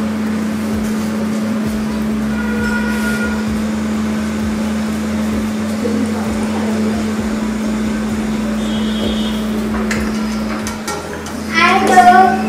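A steady low hum under a constant hiss of room noise, with faint voices in the background.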